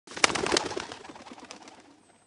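A pigeon's sound, tagged as cooing, as the 'Bored Pigeon' channel's logo sound. It starts suddenly with two sharp clicks in the first half second, then dies away by the end.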